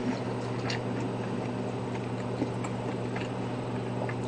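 A person chewing food with their mouth closed: faint soft mouth clicks over a steady low electrical hum.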